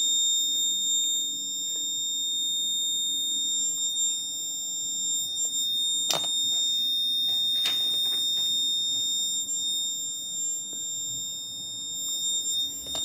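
Electronic alarm buzzer sounding one continuous high-pitched tone: the project's danger alert, set off by the SOS switch. Two sharp clicks come in the middle.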